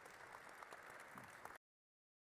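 Audience applauding, faint, with many hands clapping; it cuts off suddenly a little over halfway through.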